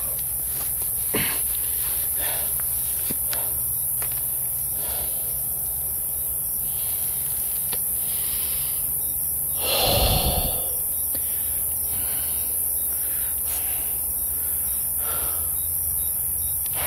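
Handheld camera handling noise: scattered clicks and rustles over a steady high hiss and low hum, with one louder rustling thump about ten seconds in.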